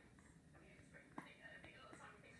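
Near silence with faint, low voices, close to a whisper, and a single small click a little over a second in.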